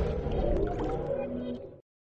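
Tail of a TV logo sting: electronic intro music fading out, dying to silence near the end.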